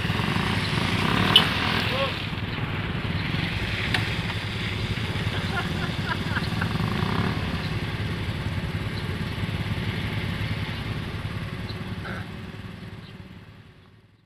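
Small low-capacity underbone motorcycle engine held at high revs, working hard as the bike struggles up a slippery mud slope. A sharp click comes about a second and a half in, and the sound fades out near the end.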